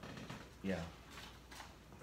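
A short spoken "yeah" in a quiet room, with faint handling noise as a paper letter is picked up.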